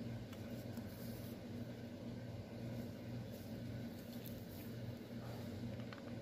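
Faint rustle of embroidery floss and needle being drawn through a stamped 11-count cross-stitch canvas, over a steady low electrical hum.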